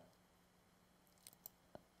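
Near silence with three faint, short clicks in the second half.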